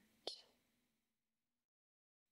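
Near silence: one short click just after the start, then faint room tone that cuts out to dead silence near the end.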